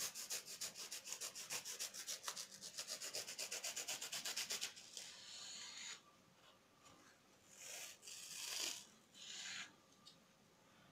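Snap-off utility knife blade sawing through a foam dish sponge in quick short strokes, about eight a second, a dry rasping that stops a little before halfway. Softer scraping follows near the end as the cut sponge is handled.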